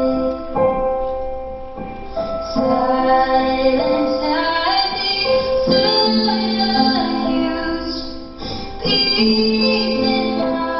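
A young woman's solo voice singing a slow song, holding long notes over instrumental accompaniment.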